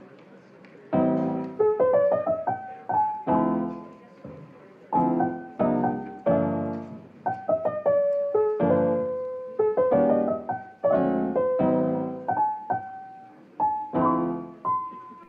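Background piano music: soft chords and a simple melody, each note struck and left to ring out, coming in about a second in.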